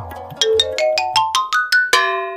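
Edited-in comedy sound effect: a quick rising run of about ten bright, pitched, xylophone-like notes, each a step higher, ending on a note that rings on and fades.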